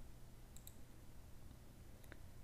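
Near silence with a faint double click of a computer mouse a little over half a second in.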